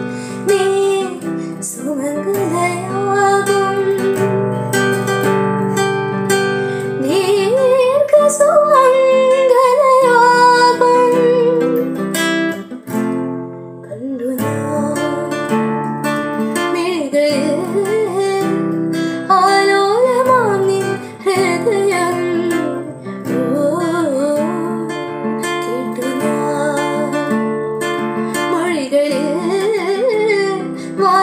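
A young woman singing a melody to her own strummed acoustic guitar, with a short pause between phrases about halfway through.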